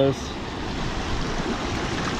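Small mountain stream rushing over rocks and riffles in a steady wash of water noise, running high after heavy rain.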